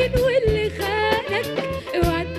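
A woman singing an Egyptian shaabi song live with a band, her voice sliding and wavering through ornamented runs over the accompaniment. Low drum strokes keep a steady beat underneath.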